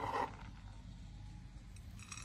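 A short scrape of a chef's knife on a plastic cutting board, gathering chopped walnuts, then faint low room noise.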